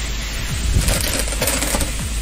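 Steady rain noise with a low rumble underneath, and a quick run of small clicks lasting about a second in the middle.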